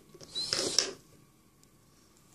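A short creaking scrape, like something being handled, lasting about half a second.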